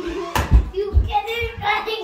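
A child's voice with a sharp knock about a third of a second in and a few low thumps after it.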